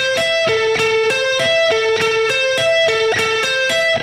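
Clean Stratocaster-style electric guitar playing an A minor 7 arpeggio one note at a time at a steady tempo, repeating the same short pattern. It is picked up, down, down, down as an economy-picking exercise.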